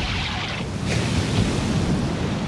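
Sea water churning and splashing as a huge creature crashes back under the surface, over steady surf and wind. There are short bursts of rushing water about half a second in and just before the second mark.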